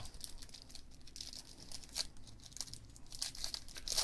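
Faint crinkling and scattered light clicks of a foil trading-card pack wrapper and cards being handled.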